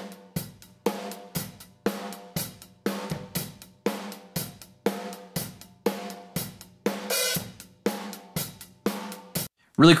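Drum overhead microphones played back through heavily squashed parallel compression (elysia mpressor plugin, very fast attack, threshold set to smash): cymbals, hi-hat and snare of a real drum kit, with strikes about twice a second. The playback stops shortly before the end.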